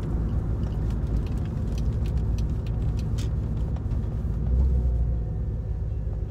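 Corvette V8 engine running, heard from inside the cabin as a steady low rumble, with a louder swell of low rumble about four and a half seconds in.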